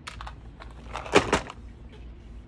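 Light clicks and then a short cluster of sharper clacks of hard plastic being handled: a clear plastic compartment box and a plastic dice tray, with a die picked up from the tray.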